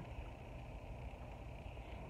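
Quiet pause with only a faint, steady low background rumble (room tone); no distinct sound stands out.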